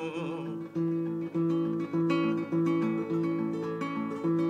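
Nylon-string classical guitar strummed in a series of chords, a new chord about every half-second to second. A held sung note dies away in the first half-second.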